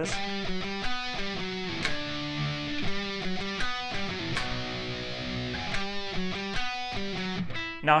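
Electric guitar playing a rock chorus riff of held chords, changing every half second to a second.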